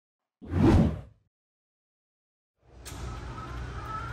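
A single swoosh sound effect for an animated logo, loud and under a second long, about half a second in. Near the end a steady low background hum with a faint high whine comes in and holds.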